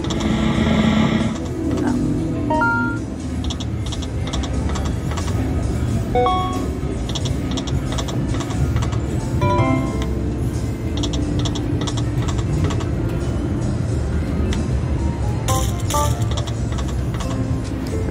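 Konami New York Nights poker machine playing its electronic game sounds: short chime and jingle tones repeating as the reels spin and stop, over a steady low background hum.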